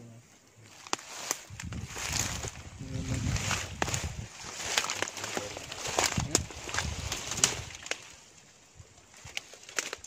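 Footsteps in rubber boots through leaf litter and shallow muddy water, with rustling and crackling of dry undergrowth and twigs, dying away about two seconds before the end.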